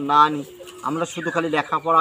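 A man talking in Bengali, with pauses between phrases.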